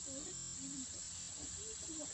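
Steady high-pitched buzzing chorus of crickets or other insects.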